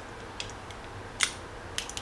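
A few light metallic clicks from a Leatherman multi-tool being handled and folded, with the sharpest click a little past a second in.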